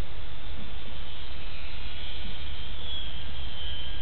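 Steady rushing wind noise on the microphone, with the faint high whine of the ultra-micro P-47's brushless electric motor and propeller coming up in the second half and drifting slightly lower in pitch.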